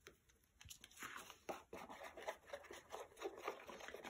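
Faint, irregular scratching and light taps of a plastic glue bottle's nozzle being dragged over the back of a paper card circle, with the card rustling as it is handled.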